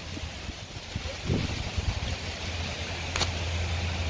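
Wind buffeting the microphone: a steady low rumble with gusty rises, and one short click about three seconds in.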